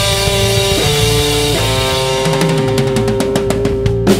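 A live rock band of electric guitar, electric bass and drum kit playing. Held guitar notes change pitch every second or so, and a fast run of drum hits fills the second half.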